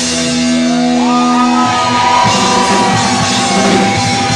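Live rock band playing: electric guitar holding sustained notes over drums, with notes that slide in pitch from about a second in.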